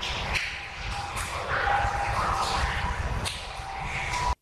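Hissy audio-recorder noise with a few sharp clicks and a faint wavering tone, played back as a possible EVP, an indistinct sound that the investigators take for a spirit's answer.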